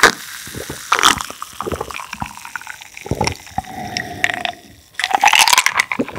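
Close-miked drinking: gulps and swallows of a cold drink from a glass with ice, with small liquid and ice sounds.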